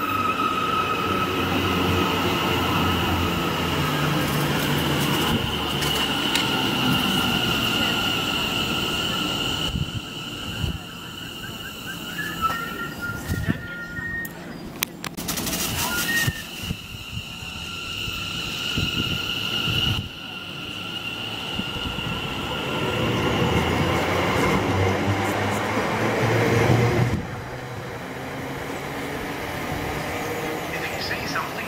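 Greater Anglia Class 720 electric train with a steady high electric whine as it runs in and slows at the platform. It goes quieter for several seconds around the middle while standing, with a few short tones and clicks. It whines again as it pulls away, its running noise building until it drops off sharply a few seconds before the end.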